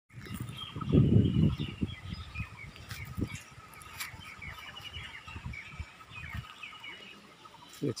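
Small birds chirping and twittering throughout, many short high calls overlapping. A loud low rumble on the microphone about a second in, with a few softer low knocks after it.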